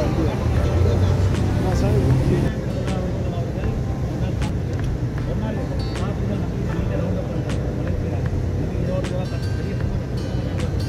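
Outdoor street ambience: a steady low rumble of road traffic, with people talking in the background.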